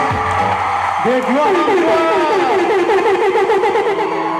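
Music with a voice that, from about a second in, holds a note whose pitch wavers rapidly up and down several times a second, in a trill-like run.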